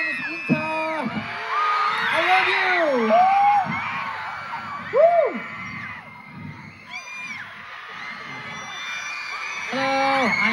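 An audience of fans cheering and screaming, with nearby individual whoops and yells loudest over the first five seconds, then dying down to a lower crowd murmur.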